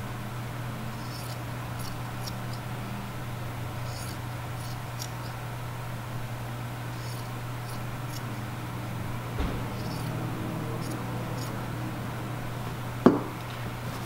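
Scissors snipping through sock fabric in faint short clicks, scattered every second or so, over a steady low hum. There is a soft thump about two-thirds of the way through and a single sharp knock near the end.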